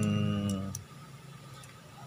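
A man's voice holding a drawn-out hesitation vowel at a steady pitch for most of a second, trailing off mid-sentence, followed by a pause with only faint background noise.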